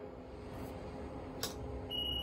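JR West SG70 simple ticket gate with a faint steady hum, a sharp click about a second and a half in, and then, near the end, the start of a single high beep as its IC card reader signals a card-read error.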